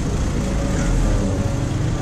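Street background noise: a steady low rumble that swells about a second in.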